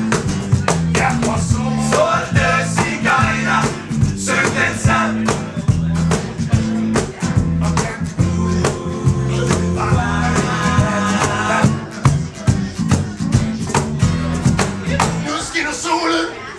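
Live band playing: acoustic guitars strummed hard and fast over a walking electric bass line.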